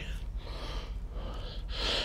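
A man's breathing, a few soft breaths in and out over a faint steady hum.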